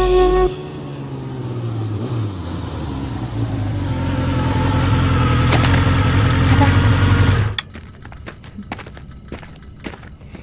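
A low, steady rumble that grows louder and then cuts off suddenly about seven and a half seconds in. Quieter scattered clicks and scuffs follow.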